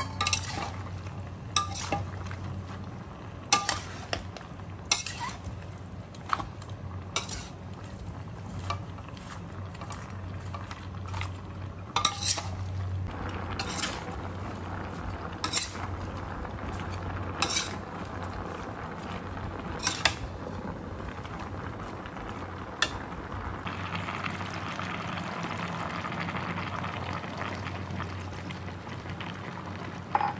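Metal spatula clinking and scraping against a stainless steel wok as vegetables and meat are stirred, with a sharp clink every second or two over a steady low hum. For the last several seconds, the clinks stop and a steady hiss of the food cooking takes over.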